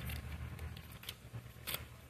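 A deck of oracle cards handled and shuffled in the hands: soft rustles and a few light clicks, with one sharper snap about three-quarters of the way through.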